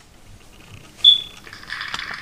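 A single sharp metallic click with a brief high ring about a second in, then a faint steady hiss starting near the end.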